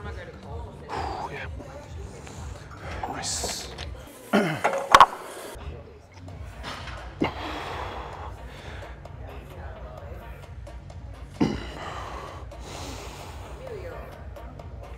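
A man's forced breathing and grunting through a set of single-arm lat pull-downs, with a sharp clank about five seconds in, over background music with a steady beat.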